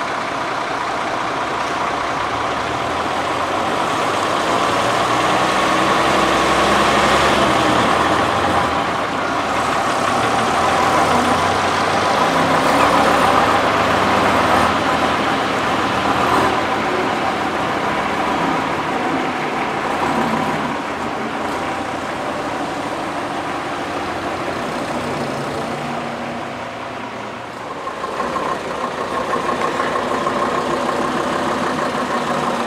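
Engines of vintage single-deck buses running as they drive across a car park. The sound grows louder as the green single-decker passes close by, then eases off. Near the end an engine is heard close up again.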